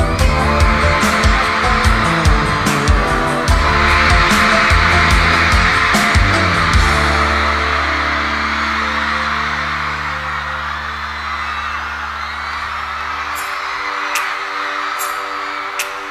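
Live rock band playing an instrumental passage, drums and bass driving the beat over a wash of high screaming from the audience. About seven seconds in the beat stops and a low bass note is held, cutting off a few seconds before the end, leaving a softer sustained chord.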